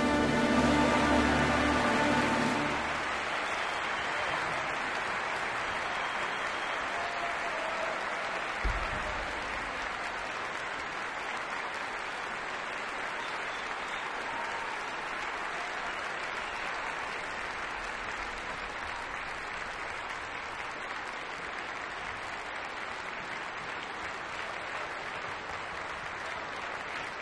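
A symphony orchestra's final chord, ending about two and a half seconds in, then an audience applauding steadily. There is one short low thump about nine seconds in.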